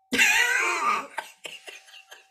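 Laughter: one high, wavering burst lasting about a second, then a few short breathy bursts that trail off.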